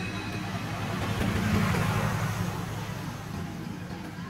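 A motor vehicle passing close by: its engine and road noise swell to a peak about a second and a half in, then fade away.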